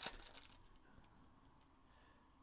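Foil wrapper of a trading-card pack crinkling as it is peeled open by hand, a few faint crackles mostly in the first half second.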